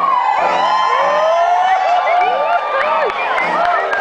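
Audience cheering and whooping, many high-pitched voices calling over one another in a steady din.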